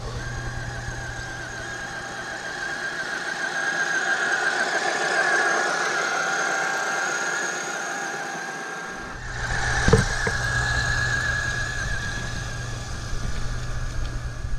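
Traxxas UDR radio-controlled truck's electric motor and drivetrain whining as it drives towing a trailer, the pitch rising and dipping slightly with the throttle. A low rumble drops out for a few seconds and returns, with a sharp knock about ten seconds in.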